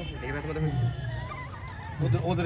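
Young children's voices talking and calling out, several high-pitched voices overlapping.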